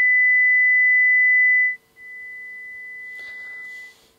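The same high pure test tone played twice: first loud for nearly two seconds, then, after a brief gap, much quieter for about two seconds. This is a loudness-pitch demonstration: although both tones have the identical frequency, the quieter one tends to be heard as slightly lower in pitch.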